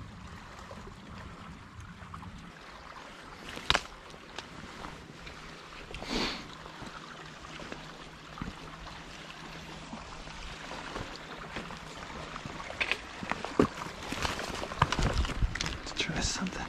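River water running steadily, with scattered sharp crackles and knocks that grow more frequent over the last few seconds.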